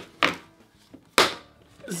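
Snap-on lid of a plastic paint bucket being pried open: two sharp clicks about a second apart, the second louder, as the lid's catches pop free.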